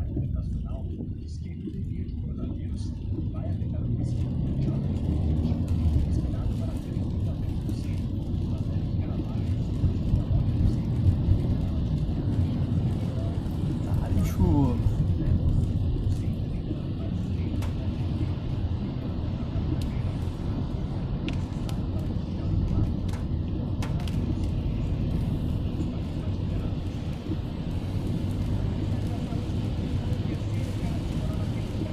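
Inside a car moving slowly on a wet road in rain: a steady low rumble of engine and tyres, with faint ticks and a brief falling tone about halfway through.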